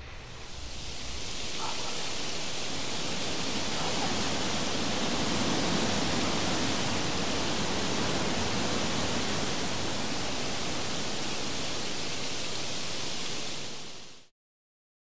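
A loud, steady rushing hiss of noise swells up over the first couple of seconds, holds evenly, then cuts off abruptly at the end.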